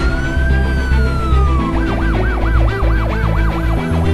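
An emergency siren sounds a slow rising and falling wail, then switches nearly halfway through to a fast yelp warbling about four to five times a second. It plays over background music with steady low tones.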